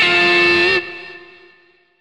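Stratocaster-style electric guitar note ringing, given a slight upward pull about three-quarters of a second in, then dropping in level and dying away over the next second.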